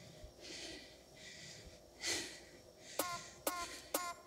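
A woman breathing hard in a few audible breaths while pedalling a stationary bike. About three seconds in, an electronic dance-music track starts with a sharp beat at about two beats a second.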